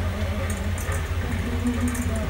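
Handheld electric vibrating massager buzzing steadily with a low, even hum as it is pressed on the scalp, with faint music behind.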